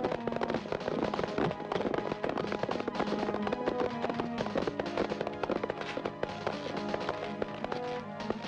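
Tense film background score: sustained pitched music with dense, rapid percussive hits running through it.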